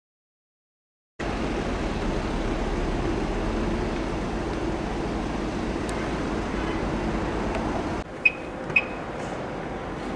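Steady hum inside a car's cabin, starting suddenly about a second in. Near the end the sound cuts to a quieter street background with two short, sharp clicks about half a second apart.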